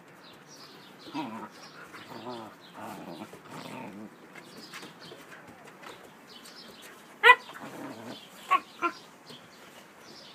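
Siberian husky puppies vocalizing in rough play: wavering growls and grumbles for the first few seconds, then one sharp, loud yelp about seven seconds in and two shorter yelps a second later.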